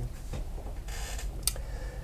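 Room tone with a steady low hum, a short hiss about halfway through and a single click soon after.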